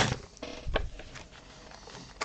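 Light rustling and a few small clicks from plastic parts bags of Lego pieces being moved and a paper instruction booklet being picked up, with one louder knock about three-quarters of a second in.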